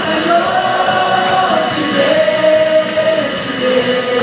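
Contemporary worship song sung into microphones by two women and a man through a sound system, with long held notes.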